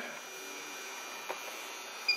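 Steady background hum with one faint click about a second and a half in.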